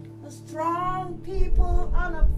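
Worship band music: a woman's voice sings a held, sliding line over sustained keyboard chords and acoustic guitar, and low beats come in about a second and a half in as the music grows louder.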